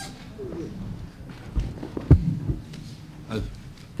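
Hearing-room background between speakers: faint low voices and a few dull knocks, the loudest about two seconds in.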